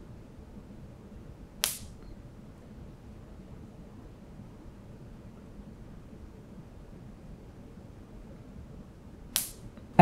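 Two sharp snaps of an electric spark jumping across the air gap between two wire electrodes on a DC power supply set to about 150 volts: one about two seconds in, the other near the end. The air breaks down while the electrodes are still some way apart.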